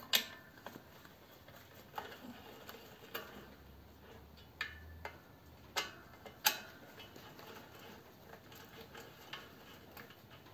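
Socket wrench working the clutch pressure-plate bolts: sharp, irregular metal clicks and clinks every second or so, tool against bolt heads and cast-iron cover, fewer and fainter near the end.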